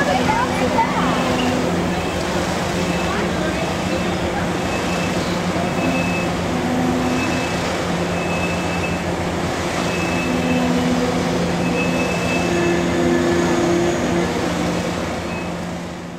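Passenger train rolling slowly along a station platform, heard from an open car window: a steady rumble and hum, with a short high ding repeating about once a second through most of it.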